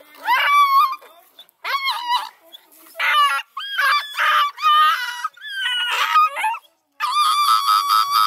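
Hound puppies shut in a dog box crying and howling to be let out: a string of high, wavering cries, one after another. About seven seconds in, one pup breaks into a fast, rapidly pulsing cry.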